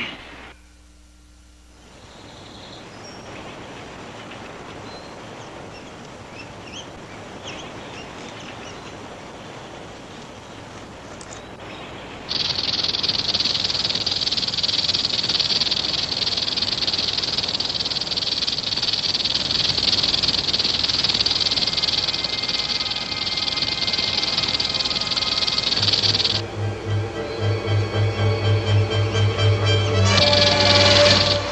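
A rattlesnake's rattle: a loud, steady, high dry buzz that starts suddenly about twelve seconds in and cuts off about fourteen seconds later. Before it there is faint outdoor background with a few short chirps. Near the end, tense music with a pulsing low beat comes in.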